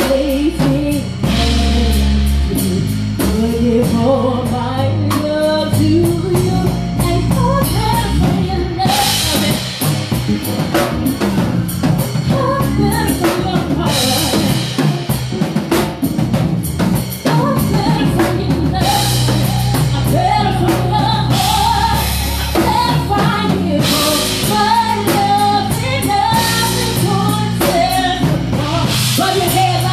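Live soul band playing: drum kit and bass under a woman singing lead into a microphone, with loud cymbal washes at several points.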